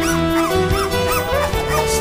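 Three-week-old black Labrador puppies whimpering and yipping in short squeals that rise and fall, several a second, over background music with long held notes.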